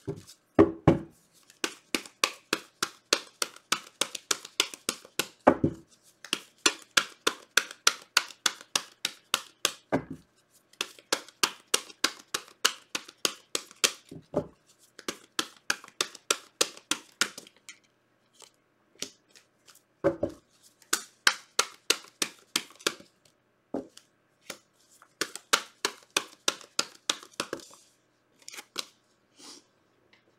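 A deck of tarot cards being shuffled by hand: runs of quick card slaps, about five a second, each lasting a few seconds with short pauses between, and a duller knock at the start of several runs.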